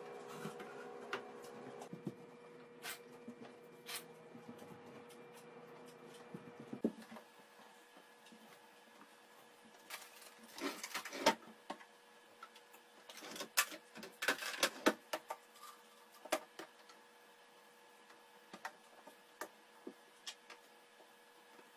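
Household items being handled and set down on a counter: scattered light clicks, taps and clatters, bunched in two flurries in the second half. A steady hum runs under the first few seconds and then stops.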